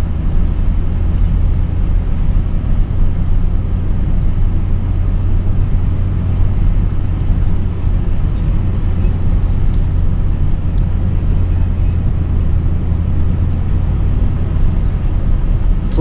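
Inside a pickup truck's cab while driving slowly on a rough dirt track: a steady low rumble of engine and road noise.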